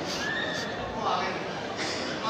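Indistinct chatter of visitors echoing in a large stone hall, with a brief high-pitched call near the start.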